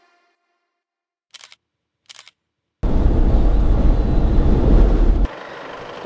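Strong dust-storm wind buffeting the microphone: a loud gusty rush, heavy in the low end, that starts suddenly about three seconds in and drops away sharply near the end to a softer wind hiss. Before it, two short clicks sound in near silence.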